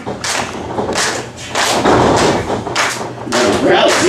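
Several thuds and knocks in a wrestling ring, as wrestlers move and hit the ring canvas, spread over a few seconds. A voice comes in near the end.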